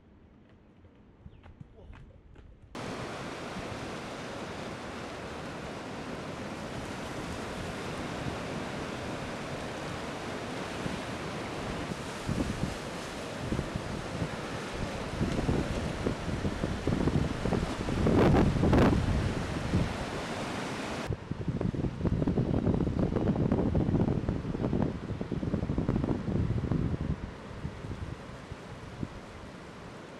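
Ocean surf heard from shore with wind on the microphone: a steady rush of breaking waves with louder gusting buffets, starting abruptly about three seconds in after a quiet start.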